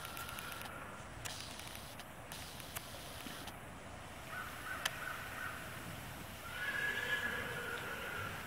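A horse whinnying in three calls, one at the start, one about four and a half seconds in and a longer, louder one near the end.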